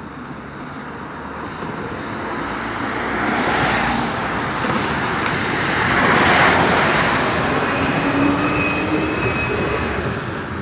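Wiener Linien ULF low-floor tram pulling away from the stop and passing close by: steady high electric whine over wheel-on-rail rolling noise, growing louder to a peak a little past halfway, then easing as it moves off.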